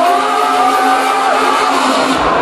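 Drum and bass DJ set played loud over a festival sound system and picked up by a phone microphone with little bass: a beatless passage of long held electronic notes that slide slightly in pitch. It cuts off at the end as crowd noise takes over.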